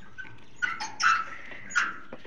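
A few short animal calls, three or four in quick succession over about a second and a half.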